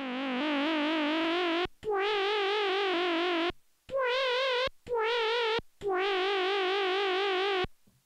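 Stylophone Gen X-1 analogue synthesizer played with its stylus: a vocal-like lead patch sounding about five sustained notes of different pitches, each with a fast, even vibrato from the LFO. A small click marks the end of each note.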